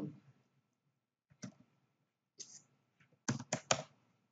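Computer keyboard typing: a few scattered key presses, then three quick ones near the end.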